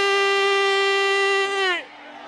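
A single loud held note, steady in pitch with a bright, buzzy tone, that sags in pitch and cuts off near the end.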